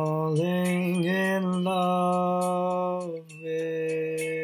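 A man singing slow, long-held notes over a soft karaoke backing track, with a short break about three seconds in before the next held note.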